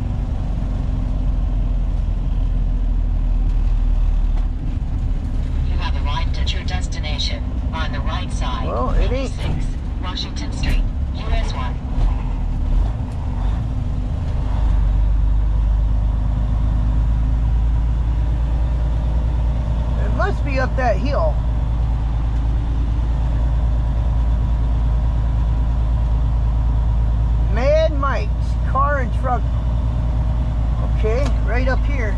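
Semi-truck's diesel engine and road noise heard from inside the cab while driving: a steady low drone whose note shifts a few times in the first half, then holds even. Short stretches of a voice come and go over it.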